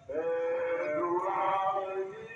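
A voice singing a procession hymn, starting suddenly and holding long notes that step and glide up and down in pitch.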